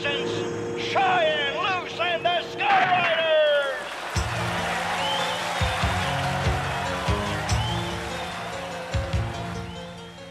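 Crowd voices shouting and cheering for the first three seconds or so. Then, about four seconds in, a band starts up with 1980s-style rock music on keytars, with steady bass and a regular drum beat.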